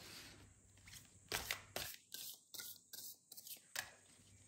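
Tarot cards being handled and shuffled from the deck: a quick run of short, soft card-on-card brushes and slides, starting a little over a second in and stopping just before the end.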